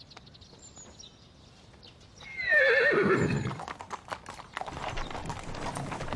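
A horse whinnies about two seconds in, one loud call falling in pitch over about a second. After it comes the clopping of several horses' hooves, an uneven run of strikes.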